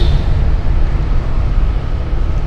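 A moving motorcycle: wind buffeting the microphone over a steady low rumble of engine and road noise.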